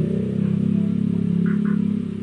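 Vivo Y55s smartphone's startup jingle, a short tune of held low notes, playing as the phone boots up after its data wipe.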